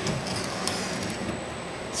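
Glass viewing panel in a villa floor being opened by hand: a few light clicks and rubbing over a steady hiss.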